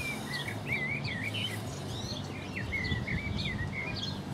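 A songbird singing two phrases of quick, wavering notes with a short break between them, over a faint steady low hum.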